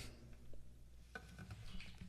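Faint handling noise from an acoustic guitar held in the hands: a few soft clicks and rustles, with no notes played.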